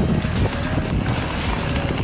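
Wind noise on an action camera's microphone while a mountain bike rolls down a gravel track: a dense, steady low rumble.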